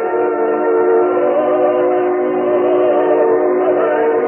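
Opera orchestra, with the voices of a live performance, sustaining long held chords that sound muffled and narrow, as in an old recording.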